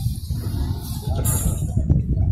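Loud low rumble on the microphone, with a sharp click near the end.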